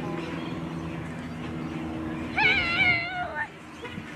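A person's drawn-out, high-pitched shout of about a second, wavering in pitch, over a steady low hum.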